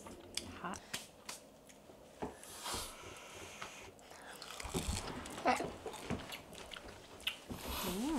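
People biting into and chewing hot, breaded fried mozzarella sticks: scattered small, quiet crunches and wet mouth sounds.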